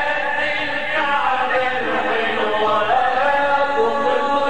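A group of men singing an Arabic Islamic devotional chant (inshad) together, their voices gliding through a melismatic melody.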